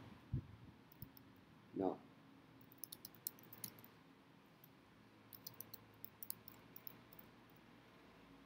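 Faint computer keyboard typing: two short runs of keystrokes, about three seconds in and again from about five to six and a half seconds in, with a single low tap just after the start. A brief hum of voice comes near two seconds in.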